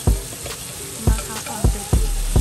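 Chicken and shrimp sizzling as they are scraped from a bowl into a hot pan of sautéed peppers, with a wooden spoon knocking against the bowl about four times.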